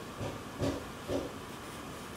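Quiet steady hiss of room tone with three faint, short soft sounds spread across the first second and a half.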